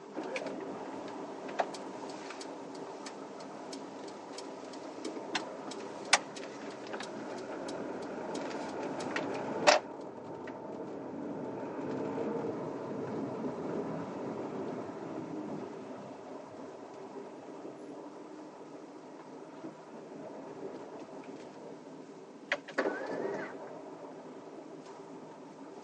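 Cabin sound of an automatic car pulling away, driving slowly and coming to a stop: steady engine and tyre noise, a little louder in the middle as it picks up speed. A run of sharp clicks comes in the first ten seconds, the loudest about ten seconds in, and a few more clicks come near the end.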